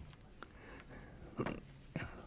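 Faint sounds of a chalk blackboard being wiped by hand: a few short, soft scrapes over a quiet room, the loudest about one and a half seconds in.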